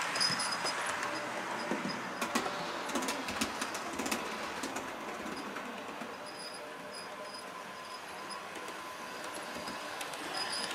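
Bachmann OO gauge Class 150/2 model diesel multiple unit running along the layout track: a steady whirr of its motor and wheels with a few clicks, growing fainter through the middle and a little louder near the end.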